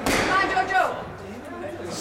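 A sharp knock at the very start, then a person's voice calling out for about half a second as a squash rally ends.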